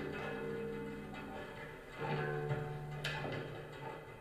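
Slow experimental music from a tam tam worked with acoustic feedback and prepared string harmonics on a Yamaha SLB100 silent bass: ringing, sustained tones die away, a new low tone enters about halfway through, and a sharp click follows about a second later.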